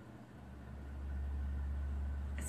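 A low, steady hum that fades in over the first second and then holds.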